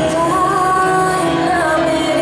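Music for a rhythmic gymnastics ribbon routine: a woman's voice singing long, slowly gliding held notes over instrumental accompaniment.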